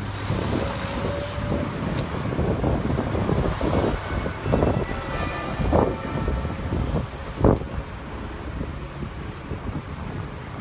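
Town-centre street traffic with a heavy vehicle's engine rumbling close by, and a few short knocks partway through.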